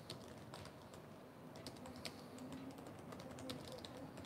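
Faint typing on a keyboard: scattered, irregular key clicks.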